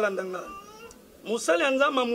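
A man's voice speaking with wide swings in pitch: one phrase trails off about half a second in, then after a short pause he starts speaking again.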